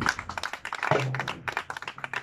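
Applause: several people clapping by hand, irregular claps after a line of a speech.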